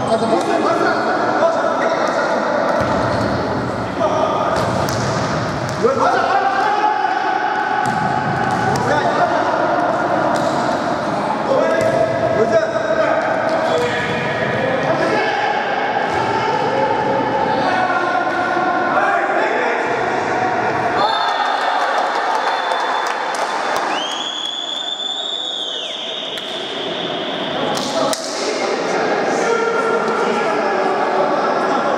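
Futsal ball kicks and bounces knocking on a hard indoor court, with players shouting in a reverberant sports hall. A long whistle blast of about two seconds comes near the end.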